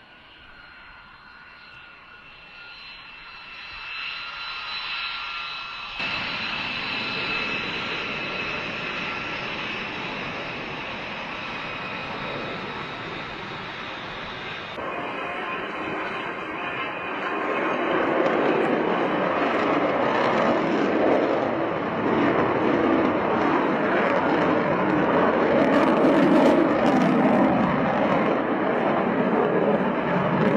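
Lockheed Martin F-22 Raptor's twin turbofan jet engines. At first they run with a high, steady turbine whine that grows louder over the first few seconds. After a cut, a much louder, rougher jet rumble takes over from about 17 s as the fighter flies overhead.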